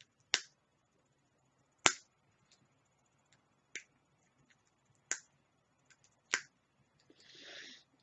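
Sharp plastic clicks and snaps from a small eyeshadow compact being pried at, with four loud snaps a second or more apart and fainter ticks between them: the lid is stuck and won't open. A short soft hiss comes near the end.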